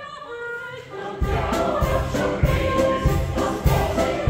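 A chorus holds a sung chord, then a little over a second in the music gets suddenly louder as a folk band comes in with a steady drum beat, about three beats a second, under the choir's singing.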